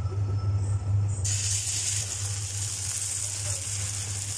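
Chilla batter poured onto a hot, oiled tawa, breaking into a steady sizzle about a second in, over a steady low hum.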